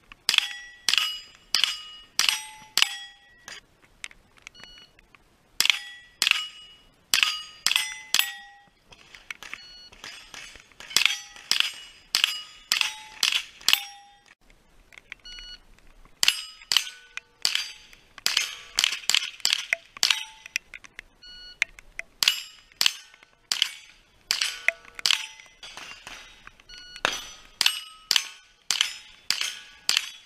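Rifle shots fired in quick strings at steel plate targets, each shot followed by the ring of the struck steel plate. The shots come about two a second in runs of several, with short pauses between strings.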